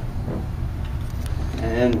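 A steady low rumble, with a man starting to speak near the end.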